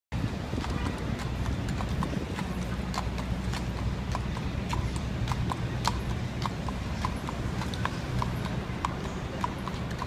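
A police horse's shod hooves clip-clopping on an asphalt street at a walk, with about two to three hoof strikes a second, over a steady low rumble of city traffic.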